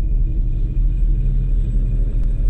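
A loud, deep, steady rumble, the low drone of a trailer soundtrack.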